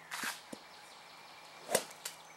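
A golf club striking the ball off the tee: a short swish of the downswing rising into one sharp crack near the end. A brief rustle comes about a quarter second in.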